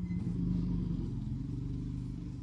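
A motor vehicle's engine running with a low, steady hum that swells slightly at the start.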